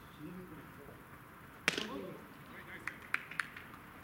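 A pitched baseball meets the plate with one sharp crack about one and a half seconds in, the loudest sound here, followed by players' voices and a few lighter clicks near the end.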